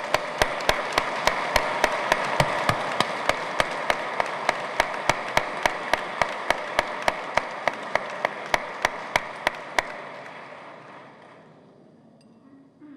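Audience applause in a church, with one close pair of hands clapping loud and sharp at a steady beat of about four claps a second over the general clapping. The applause dies away over the last two seconds.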